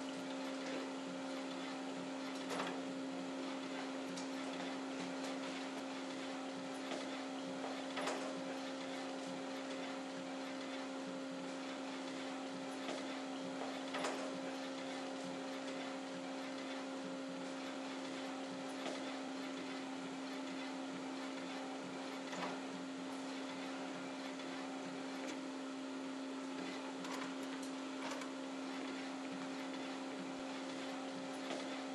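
Epson ColorWorks CW-C6520A colour inkjet label printer printing in its 1200x1200 dpi high-quality mode, feeding the label slowly at 6 mm/s. It makes a steady mechanical hum with a constant low tone, and a short sharp tick every few seconds.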